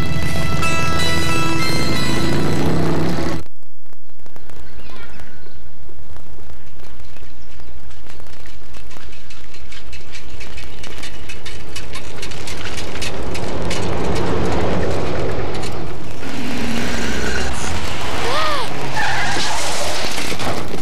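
Film soundtrack music that cuts off suddenly about three seconds in, giving way to street traffic noise with cars going by. Near the end there is a short squeal as a delivery bicycle goes down in front of a car.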